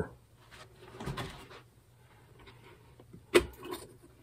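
Faint handling sounds and a few small clicks, then one sharp knock about three and a half seconds in as a plastic vinegar jug is set down on the plywood workbench.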